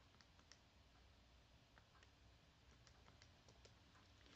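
Near silence, broken by faint, scattered small clicks at irregular intervals.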